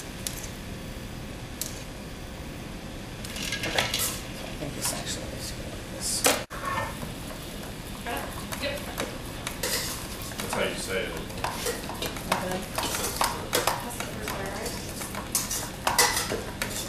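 Metal clattering and scraping of a spaetzle maker and steel pots being handled on a stovetop: a run of quick clinks and scrapes that grows busier in the second half.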